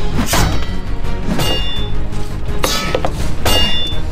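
Weapon strikes in a staged pirate fight: about four sharp hits, roughly a second apart, some with a short ringing tail like a blade clash, over steady background music.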